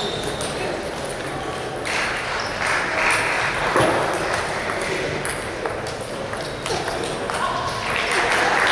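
Table tennis balls clicking and bouncing on tables and bats, amid a background murmur of voices in a large sports hall.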